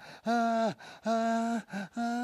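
A man's voice acting out breathless panting: two drawn-out voiced gasps of about half a second each, then a shorter one, the sound of someone who is out of breath after running.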